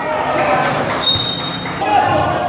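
Spectators chattering around a basketball game, with a short high steady tone about a second in.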